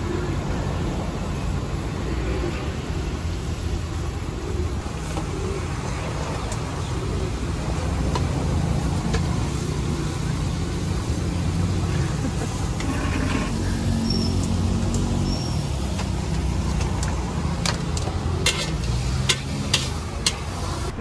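Steady low rumble of street traffic, with a few sharp clicks near the end.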